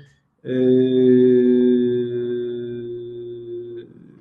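A man's drawn-out hesitation hum, held steady on one low pitch for about three seconds starting half a second in, fading slightly before it stops.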